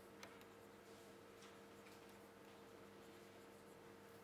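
Near silence: faint taps and light scratches of a stylus writing on a tablet, over a low steady hum.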